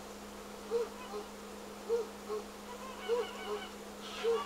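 Domestic white geese honking: a short two-part honk repeats about once a second, with a burst of higher, more excited calls near the end, typical of geese raising alarm at an intruder.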